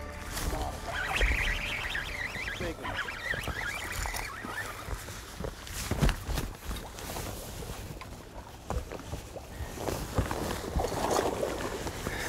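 Outdoor ambience on a bass boat: a steady low wind rumble on the microphone, with scattered clicks and knocks and a sharper knock about halfway through. High chirping sounds come in the first few seconds, and a short burst of noise near the end.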